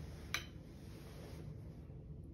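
Quiet room tone with one short, sharp click about a third of a second in.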